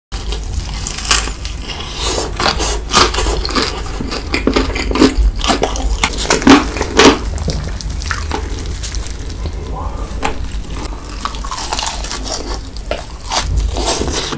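Close-miked crunching and chewing of fried chicken and cheese balls coated in crushed spicy Cheetos, a run of irregular crisp crunches and wet mouth sounds, loudest about halfway through.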